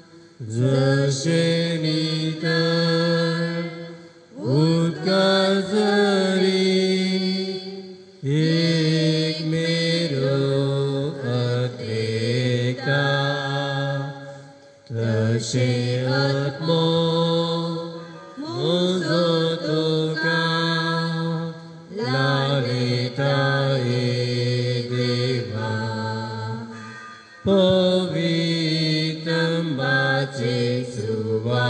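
Slow hymn singing in phrases of a few seconds each, with short pauses for breath between them.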